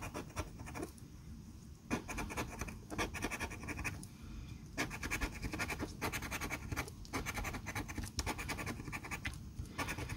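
A coin scratching the coating off a scratch-off lottery ticket in quick repeated strokes, light at first and then in spells with short pauses.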